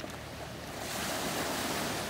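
Small sea waves breaking and washing up the shore in a steady surf hiss, swelling a little about a second in, with some wind on the microphone.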